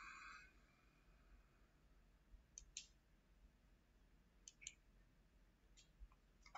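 Near silence broken by faint computer mouse clicks: two quick pairs of clicks a couple of seconds apart, and one fainter click near the end.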